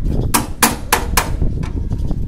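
Four sharp knocks on metal, about three a second, each with a short ringing tail, as the steel formwork frame and its ring hooks are struck at one end.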